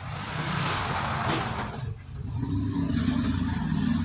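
Plastic bubble wrap rustling as a boxed tool is unwrapped, then from about two seconds in a steady low engine hum of a motor vehicle.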